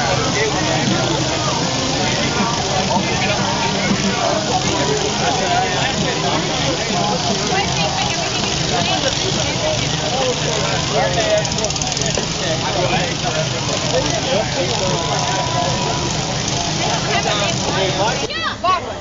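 Off-road truck engines running in a mud-bog pit, steady and continuous, under the loud chatter of a large crowd of onlookers.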